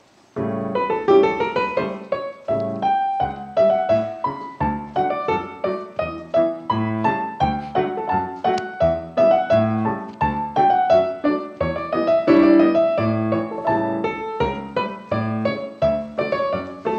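Piano music with a steady beat, the accompaniment for a ballet class exercise, starting about half a second in.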